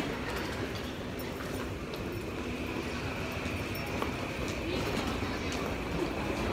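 Busy train-station ambience: a steady rumble of crowd noise with background voices and footsteps, and a faint steady high tone coming in about two seconds in.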